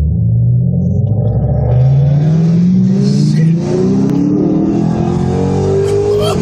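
Car engine accelerating hard at full throttle, heard from inside a car's cabin. It rises steadily in pitch over several seconds, with a short dip in level a little past halfway.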